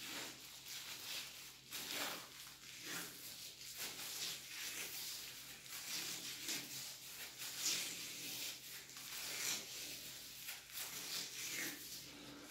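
Paper masking tape being pulled off its roll in short, irregular rasps as it is wound around a plastic bag, with the bag crinkling. Faint throughout.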